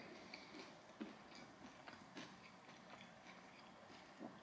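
Faint chewing of a mouthful of toast: a scatter of small soft clicks.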